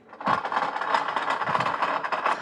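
A steady mechanical rattling noise that starts a moment in and runs on without a break.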